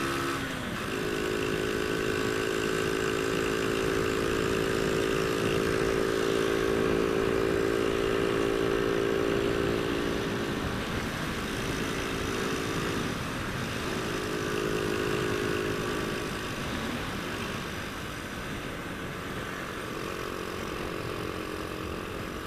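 Honda Astrea Grand's small single-cylinder four-stroke engine running hard at a steady high-rev note, about 70 km/h, over rushing wind noise. The pitch steps up about a second in and the engine note thins for a few seconds past the middle.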